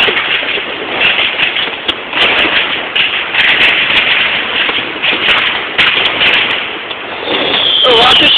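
Fireworks and firecrackers going off all around in a dense, continuous barrage of bangs and crackles, with a falling whistle near the end.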